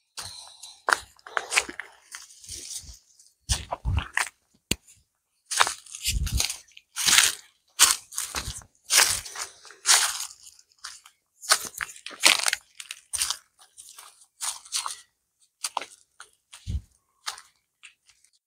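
Footsteps crunching through dry leaf litter and twigs on a forest path: an uneven run of crunches, about one to two a second.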